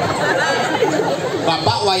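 Speech: talking through a microphone, with chatter from the crowd.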